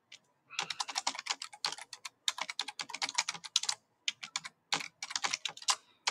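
Typing on a computer keyboard: a quick run of key clicks that starts about half a second in, with a short pause a little after four seconds before the typing resumes.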